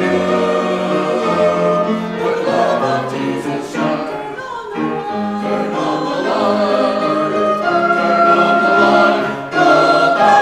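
Church choir singing a gospel-style anthem with accompaniment, in sustained chords, dipping briefly just before the end before a new chord is held.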